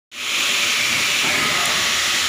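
A steady, loud hiss from a running machine, starting abruptly just after the start and holding level throughout.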